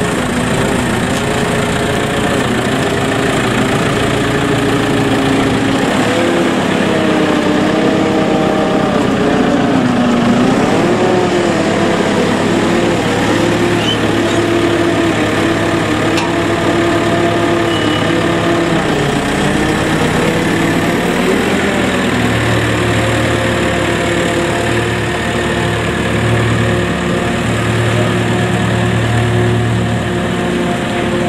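JCB telehandler's diesel engine running, its revs rising and falling unevenly for several seconds as it works. It settles to a steadier, lower note about two-thirds of the way through.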